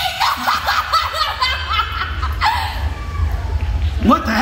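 A woman's long theatrical villain's cackle over the stage loudspeakers: a rapid string of short, rising laughs. A steady low rumble runs underneath.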